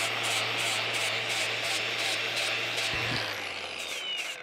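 Cordless angle grinder running against a steel excavator boom, grinding the paint off down to bare metal ready for welding. It is a steady grinding hiss over the motor's hum, with a faint pulse about four times a second, and it eases slightly near the end.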